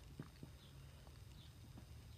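Faint taps and strokes of a felt-tip marker writing numbers on paper: a few short ticks near the start, over a low steady hum.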